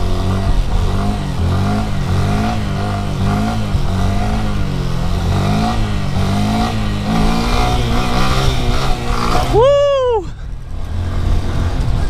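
2018 Honda Grom's 125cc single-cylinder engine running under throttle through a wheelie, its pitch rising and falling again and again as the throttle is worked to hold the front wheel up. Near the end comes one brief high-pitched sound that rises and then falls.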